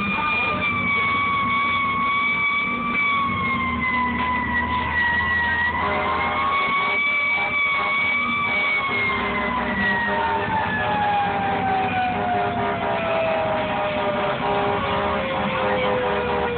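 A live band holding a droning passage: one sustained high tone wavers a little and then glides slowly down in pitch through the second half, over steady low held notes, with more held notes joining about six seconds in.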